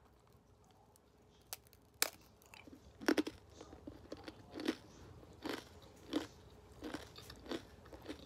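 A person chewing a crisp cassava cracker (opak) with sugar syrup: after a near-silent start, a sharp crunch about two seconds in, then short crunches every half-second to second as it is chewed.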